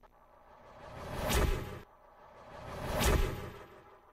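Two whoosh sound effects of a TV station logo ident, about two seconds apart, each swelling up to a peak; the first cuts off suddenly.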